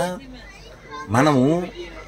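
Speech only: a man talking, with a short pause in the first second.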